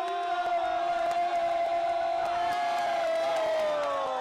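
A single voice holds one long shouted note at a steady pitch for about four seconds, sagging in pitch near the end, over crowd noise in a large hall.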